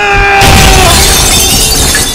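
A loud crash of shattering glass from a film fight scene, starting about half a second in and lasting well over a second. Under it runs a held tone that falls slightly.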